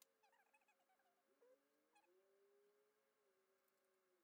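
Near silence, with very faint wavering tones: a few short ones in the first second, then one held tone for about three seconds.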